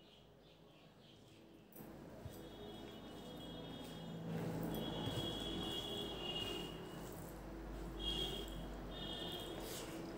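Hand-eating sounds: fingers mixing rice and curry on a banana leaf and chewing. Short chirps sound in the background a few times from about two and a half seconds in.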